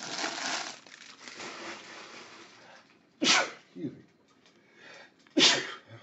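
Sealed foil card packs rustling and crinkling as they are handled, then a person sneezing twice, about two seconds apart, the sneezes being the loudest sounds.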